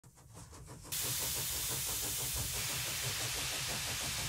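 Steady hiss of escaping steam that starts suddenly about a second in, over a low rumble.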